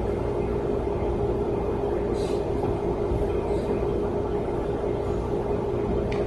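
Steady room tone of a lecture hall: an even hum with a low rumble and a faint hiss, unchanging throughout, with a couple of faint brief rustles.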